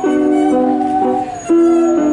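Bowed musical saw playing a melody: one sliding, wavering tone with wide vibrato. Under it, sustained chords from another instrument change about every half second.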